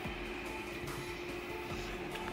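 Xbox Series X replica mini fridge's cooling fan running: a steady, loud fan whir with one constant hum tone held through it.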